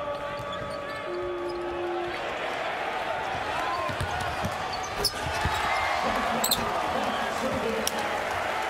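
A basketball being dribbled on a hardwood court, with several bounces from about the middle on, over steady arena noise.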